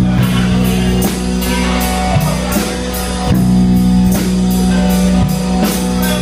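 Live rock band playing amplified in a room: electric guitar, bass and drum kit keeping a steady beat.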